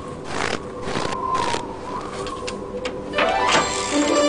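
Footsteps crunching in snow, about two a second, over light music; a fuller musical phrase comes in near the end.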